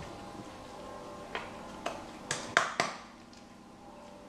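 Fingers packing minced-meat stuffing into a hollowed piece of long marrow: five short clicks and taps over about a second and a half, the loudest near the middle, over a faint steady hum.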